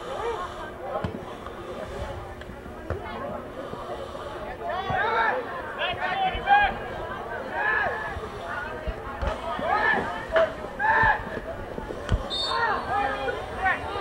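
Voices shouting and calling out across a soccer field during play, loudest about six and a half seconds in, with a few low thuds scattered through.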